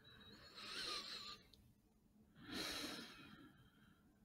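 A man breathing close to the microphone: two slow breaths about two seconds apart, the first with a faint whistle.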